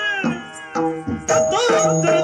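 Yakshagana bhagavata singing a high, gliding vocal line to maddale drum strokes; the voice breaks off briefly near the middle and comes back strongly in the second half.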